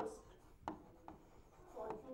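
Pen writing on an interactive display board: faint rubbing strokes with a couple of sharper taps of the pen tip around the middle.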